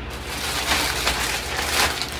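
Rustling and crinkling of a plastic packaging bag and clothing being handled, starting about half a second in and getting louder toward the end.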